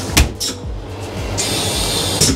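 Train toilet's flush system running after an error was cleared: a sharp clunk a fraction of a second in, then a steady rushing hiss of water or air near the end, over a steady low hum.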